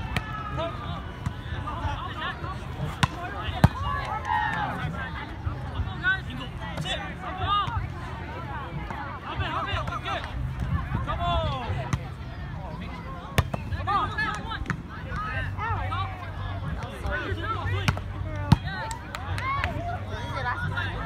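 A volleyball being struck by hands and forearms during a rally: about five sharp smacks spread through the stretch, the loudest a few seconds in and near the end. Players and onlookers call and chatter indistinctly throughout.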